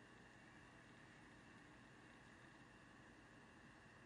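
Near silence: faint steady hiss of the recording's background noise.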